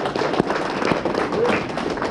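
A small crowd clapping in irregular, overlapping claps, applauding an award winner.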